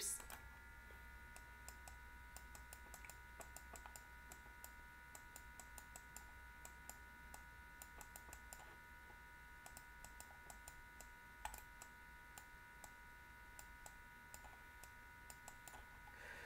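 Near silence with faint, irregular clicking from writing on a computer (stylus or mouse input), one click a little louder about eleven seconds in, over a faint steady high whine.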